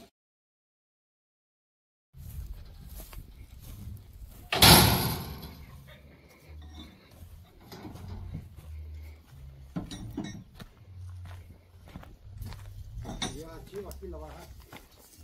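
Silence for about two seconds, then a single loud bang about four and a half seconds in that fades over about a second: a steel-framed livestock feeder being set down while feeders are unloaded from a truck. Lighter handling knocks and faint voices follow.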